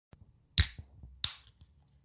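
Two sharp pops about two-thirds of a second apart, the first the louder; called a weak pop.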